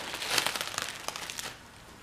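Plastic bubble wrap crinkling as it is unfolded and pulled back from a box: a quick run of small crackles that dies away about one and a half seconds in.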